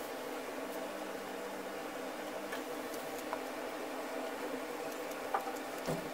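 Steady room tone: a low hum and hiss, with a few faint small clicks about halfway through and near the end.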